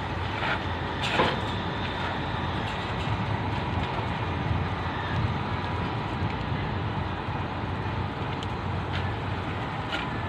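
Diesel engine of a truck-mounted concrete pump running steadily while it pumps concrete, with a sharp knock about a second in.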